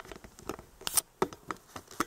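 A string of small, irregular clicks and taps from a handheld camera being handled and turned, the strongest about a second in.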